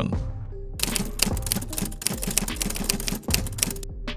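Rapid, uneven clicking like typewriter keys striking, starting about a second in and stopping just before the end, over quiet background music.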